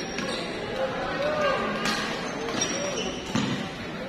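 Shuttlecock struck back and forth by badminton rackets in a doubles rally: two sharp hits about a second and a half apart, over crowd chatter.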